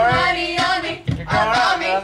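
Women's voices singing loudly along at karaoke, the singing breaking off briefly about a second in.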